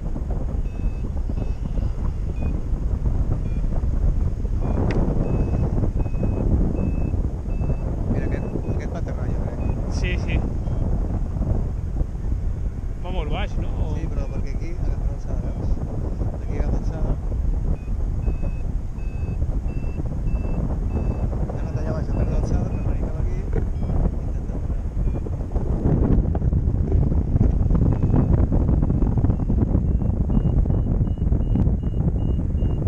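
Wind buffeting the microphone in flight under a tandem paraglider, with a variometer beeping in runs of short high beeps whose pitch creeps upward, the sign of rising air.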